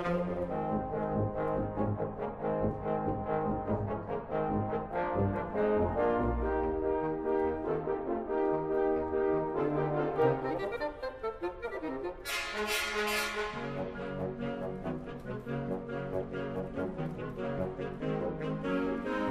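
Wind orchestra playing a slow passage of sustained chords. About twelve seconds in, a brighter, fuller sound enters in the upper range.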